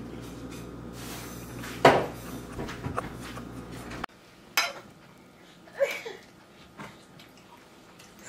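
Plates and a fork clinking, with one sharp clink about two seconds in, over a steady background hum. About halfway the hum cuts off abruptly, and a few quieter clicks of a fork on a plate follow.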